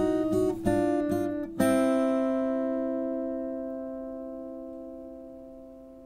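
Guitar music: a couple of strummed chords, then a final chord about a second and a half in that is left to ring and slowly fade away.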